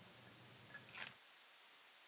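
Near silence: room tone, with one faint brief high noise about a second in.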